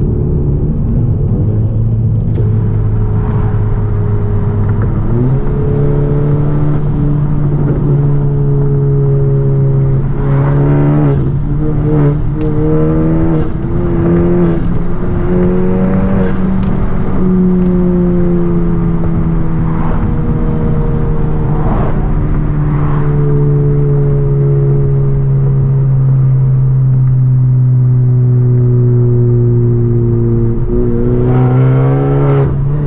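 Car engine and exhaust droning steadily, heard from inside the cabin at highway speed. The pitch steps up about five seconds in and climbs slowly, then drops at about seventeen seconds and sinks gradually as the throttle eases. Several short sharp crackles come through in the middle stretch.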